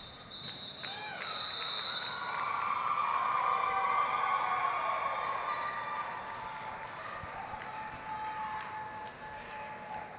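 Short steady blasts on a referee's whistle in the first two seconds as the jam is called off. After that, arena crowd noise of cheering and chatter swells for a few seconds and then dies down.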